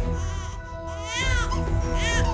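Newborn baby crying, with one high wail that rises and falls about a second in and another beginning at the end. Background music with held notes and a low rumble runs underneath.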